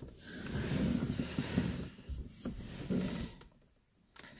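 Soft, noisy breath and rustling close to a phone's microphone, with a few faint knocks in the second half.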